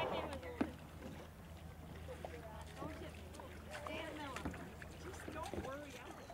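A canoe being pushed off from shore and paddled, with one sharp knock about half a second in, over faint voices in the distance.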